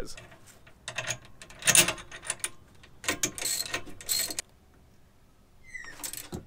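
A hand ratchet clicking in several short bursts, with metal clinks, while the bolt that sets a SuperSprings helper spring's roller is moved to a lower hole on the rear leaf spring.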